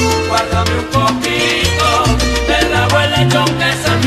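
Instrumental passage of a Christmas salsa song, with no singing: a bass line moving about every half second under melody instruments and steady percussion.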